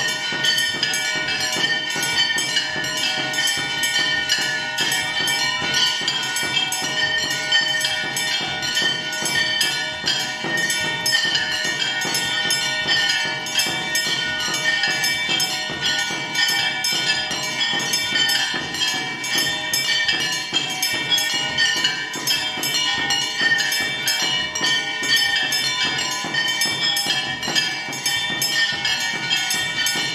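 Devotional instrumental music: bells ringing on held, steady tones over a fast, even percussion beat, with no singing.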